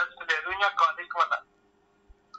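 A person's voice speaking over a telephone line, thin and missing its low end, stopping about one and a half seconds in. A faint steady line hum runs underneath.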